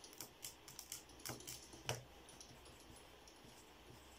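Faint, quick clicking of pocket-calculator keys being pressed, with two louder knocks at about one and two seconds in, then quiet.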